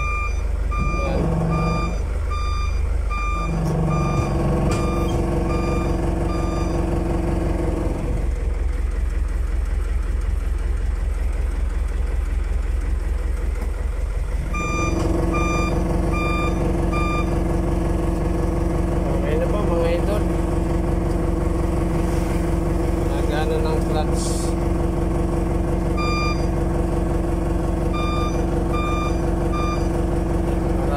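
Truck's reverse-gear warning beeper beeping repeatedly over the steadily idling engine, sounding because reverse is selected while the newly replaced clutch master and slave cylinders are checked. The beeping comes in three spells, stopping for several seconds between them.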